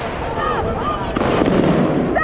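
New Year's fireworks crackling and banging in the background, with people shouting over them and a heavier low rumble in the second half.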